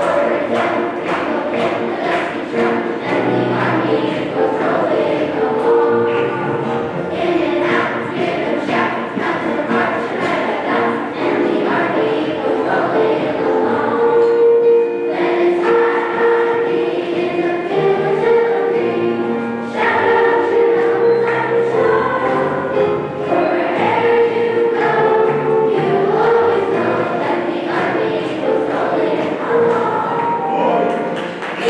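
A children's choir singing a patriotic song together.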